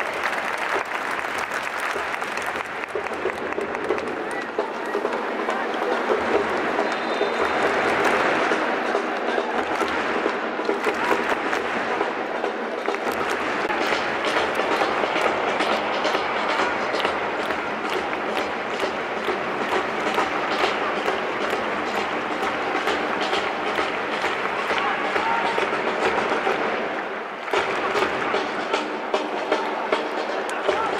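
Football stadium crowd clapping: a dense, steady patter of many hands that dips briefly near the end.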